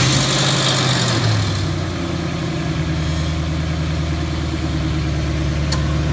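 2005 Mustang GT's 4.6-litre V8 idling just after starting. The idle comes down from a higher speed to a steady lower one within the first second or two.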